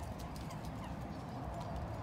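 Dogs' claws clicking and tapping on wooden deck boards as small dogs trot about: a quick, irregular patter of light clicks.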